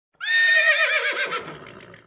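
Horse whinnying once: a high, quavering call that starts suddenly and falls away over about a second and a half.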